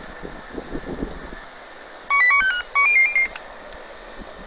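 Two-way radio sending two short bursts of rapid stepped beeps, each tone at a different pitch, about two seconds in: a selective-call tone sequence. Under it is a steady background hiss.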